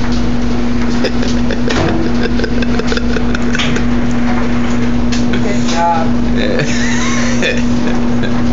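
A steady, loud machine hum with one constant low tone, under brief clicks and rustles of handling and a few short child vocal sounds in the second half.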